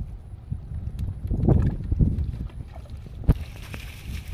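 Water sloshing as a collapsible mesh fish trap is handled in shallow river water, over wind rumbling on the microphone. A sharp knock comes a little past three seconds in, then a steady hiss as the net is lifted and water runs out of it.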